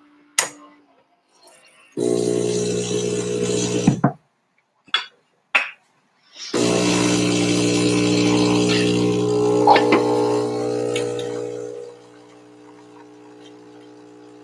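Philips Series 3100 super-automatic espresso machine running its brewing cycle. A loud motor hum lasts about two seconds, then stops. After a pause with a couple of clicks, a second longer loud hum runs about five seconds and then drops to a quieter steady pump hum as the espresso starts to pour.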